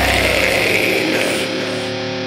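Heavy metal recording: a distorted guitar chord rings on as the drums and bass drop out about half a second in, leaving a brief sustained break.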